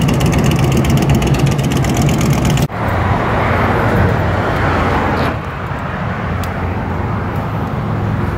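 A motorcycle engine running loud and steady nearby. About two and a half seconds in the sound breaks off abruptly, and a duller rushing noise with a lower, more muffled engine drone follows, fading down to a steady background drone.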